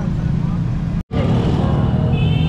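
Busy roadside street-market noise: a steady low rumble of traffic with faint voices in the crowd. The sound cuts out completely for a moment just after a second in.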